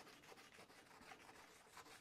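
Faint rubbing of a wad of wet, crumpled aluminium foil scrubbed back and forth over the rusty chrome fender of a 1968 Honda CB350, working the rust off the plating.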